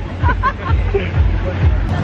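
A man laughing briefly, then the chatter of the people around him, with music in the background and a steady low rumble underneath.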